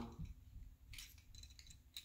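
A few faint plastic clicks from a Transformers Earthrise Hoist figure's joints and panels as its arms are folded down during the change to robot mode, about halfway through and again near the end.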